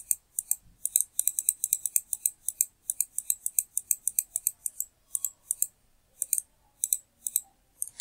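Computer mouse button clicked over and over, several sharp clicks a second in quick runs with short pauses, stepping a program through a simulator line by line.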